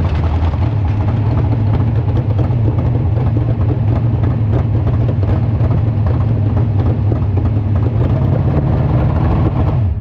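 Sprint car's V8 engine idling with a loud, steady, low rumble.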